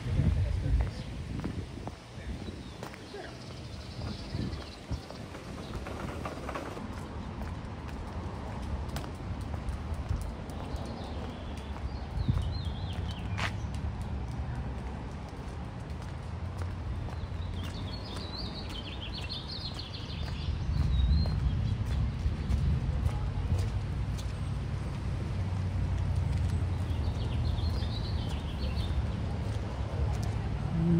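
Outdoor ambience: a steady low rumble with birds chirping in short bursts, a few times around the middle and again near the end.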